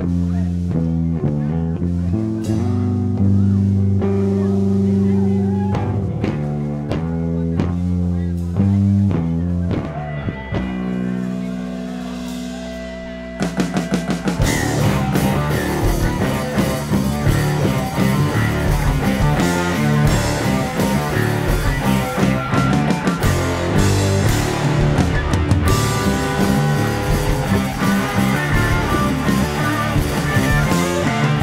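Live blues-rock band: a riff played alone on one instrument opens the song. About thirteen seconds in, drums, bass and guitars come in together and the full band plays loudly.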